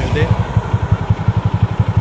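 Motorcycle engine running with a fast, even low throb.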